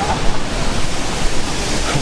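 Loud, steady rushing noise of a city street, coming through a microphone that may be faulty or badly set: no distinct event stands out.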